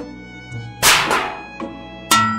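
A single sharp crack about a second in, with a hissing tail that dies away within half a second, over music with steady held notes.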